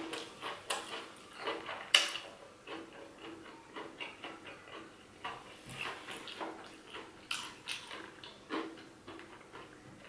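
Close-up chewing of a bite of crispy fried chicken sandwich: irregular crunching clicks and crackles of the breaded coating, the loudest crunch about two seconds in.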